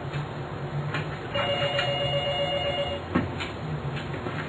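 A telephone ringing once, for about a second and a half in the middle, over a low steady hum. A single soft thud comes about three seconds in.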